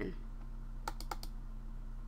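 Three quick computer mouse clicks about a second in, the double-click that opens a folder, over a steady low electrical hum.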